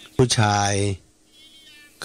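A man speaking one word in Thai for about the first second, then a faint, high, wavering call lasting about half a second near the end.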